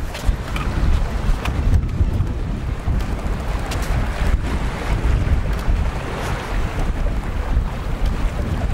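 Wind noise on the microphone, a steady uneven low rumble, with a lighter wash of small waves on the shore behind it.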